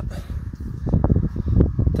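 Wind buffeting the microphone: an uneven low rumble that grows louder about halfway through.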